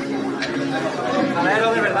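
Several people talking at once, with a louder voice calling out near the end.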